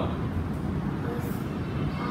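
Steady low background rumble, with a brief faint hiss a little past halfway.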